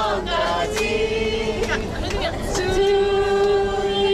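A group singing a worship song together, led by a woman's voice over a microphone, with long held notes and hand clapping along.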